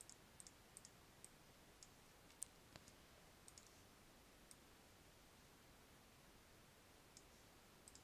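Faint computer mouse clicks over near-silent room tone: about a dozen short, scattered clicks in the first few seconds, the loudest about two and a half seconds in, and two or three more near the end.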